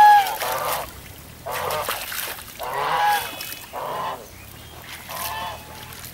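Geese honking, about seven calls in six seconds, the first the loudest.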